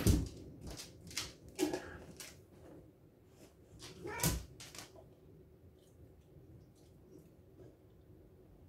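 A pet dog close by makes a run of short, sharp sounds over the first five seconds, two of them with a brief whine.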